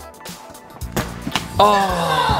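A child's foot kicks a toy football with a sharp knock about a second in, and a second knock follows a moment later, over background music.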